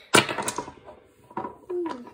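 Large polished magnets clacking together: a sharp click, then a second smaller click about a third of a second later.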